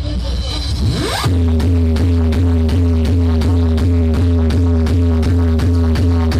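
Loud electronic dance music from a DJ sound system: about a second of build-up with a rising sweep, then a heavy bass beat drops in and runs on at a steady pulse.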